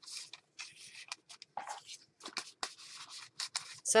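Paper journal pages and card stock being handled: dry rustles and light scrapes of paper sliding against paper, in short, irregular crackles.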